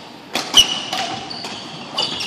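Badminton being played on a wooden sports-hall court: a sharp hit about half a second in, the loudest sound, then several short high squeaks of shoes on the court floor.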